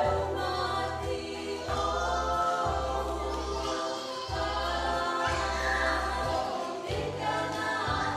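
A song sung by a group of voices together, choir-style, over a low sustained bass line that changes note every second or so.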